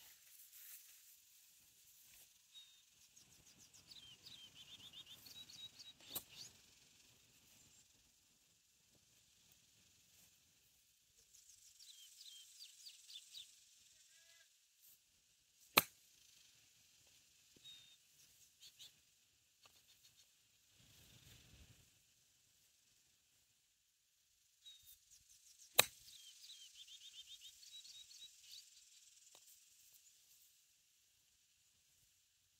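Three crisp clicks of a Ram EZ Out 56-degree wedge striking golf balls off grass, about ten seconds apart, with faint chirping trills in the background.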